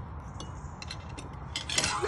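Forks clicking and scraping on plates in scattered small taps, with a louder rushing scrape near the end.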